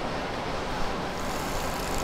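Steady outdoor background noise, a low rumble with hiss, and a brief brighter hiss in the second half.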